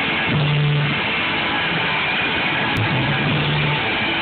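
A punk rock band playing live: distorted electric guitar, bass guitar and drum kit, loud and steady, with two held bass notes about half a second and three seconds in. The recording lacks treble.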